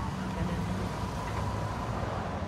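Steady low rumble of a motor vehicle, with a faint steady tone above it.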